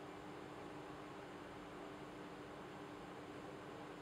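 Room tone: a faint steady hiss with a low, constant hum underneath, and no distinct sound events.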